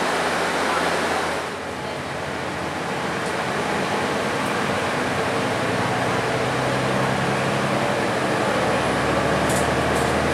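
Cabin noise inside a Mercedes-Benz Citaro city bus under way: a steady hiss of road and air-conditioning noise over the engine's low drone, which shifts and grows a little stronger about halfway through.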